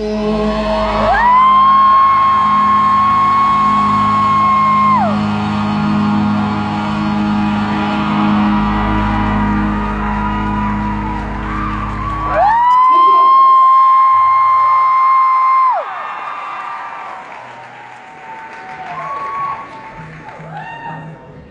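Live band music in a large hall with two long, high held notes. The band stops about two-thirds of the way through, leaving the last held note ringing alone before the sound fades, like the end of a song.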